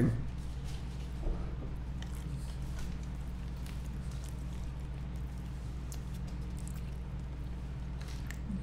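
Faint chewing and small mouth and handling clicks as chicken nuggets dipped in barbecue sauce are eaten, over a steady low electrical hum.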